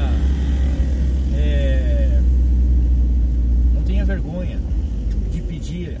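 Low, steady engine and road rumble inside a school van's cabin while driving; the rumble drops away about four seconds in as the van eases off.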